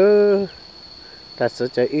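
Insects droning steadily at one high pitch, under a person's voice that draws out a word at the start and starts talking again about one and a half seconds in.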